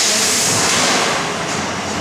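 Featherweight combat robots clashing, with a sudden loud rush of hissing noise as one robot is thrown up on end. The noise eases off after about a second and a half.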